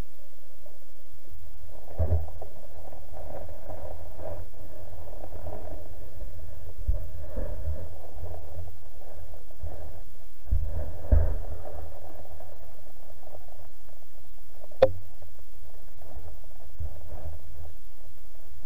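Muffled underwater sound picked up by a camera in a waterproof housing: a steady low rumble with dull knocks every few seconds and one sharp click about three-quarters of the way through.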